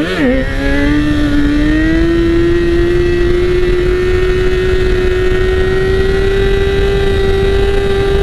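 2012 Kawasaki ZX-6R's 599 cc inline-four sport-bike engine at high revs, held on the throttle in a wheelie. After a brief dip at the start, its pitch stays steady and creeps slowly higher. Wind rumble on the microphone sits underneath.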